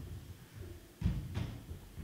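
Handling noise on a handheld microphone as it is gripped and passed between hands: two dull, low thumps close together about a second in.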